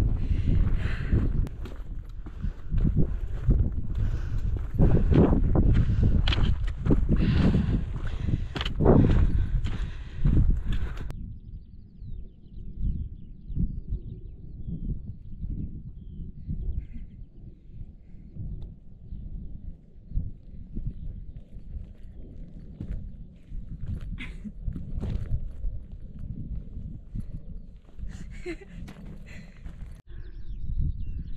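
Wind buffeting the microphone, with a hiker's footsteps on the climb, loud for about the first eleven seconds. It then cuts suddenly to a quieter, duller wind rumble.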